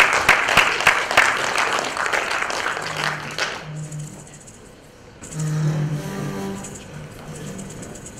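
Audience applause that fades out after about three and a half seconds, followed by music with a low melody line.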